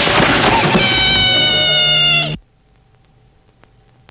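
A girl's long, loud scream, high and wailing with its pitch sliding slightly down, cut off abruptly about two and a half seconds in.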